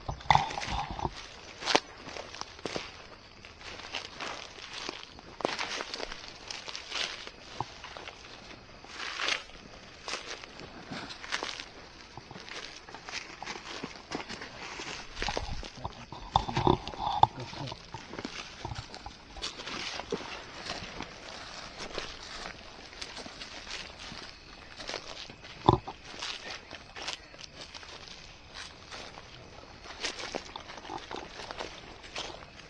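Footsteps tramping through dry weeds and brush, with irregular rustling of vegetation as people walk, and a single sharp knock late on.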